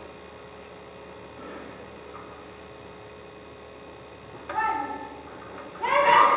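A steady electrical hum on an amateur camcorder recording of a stage, with faint, distant voices from the stage. About four and a half seconds in comes a brief, louder voice, and loud speech starts right at the end.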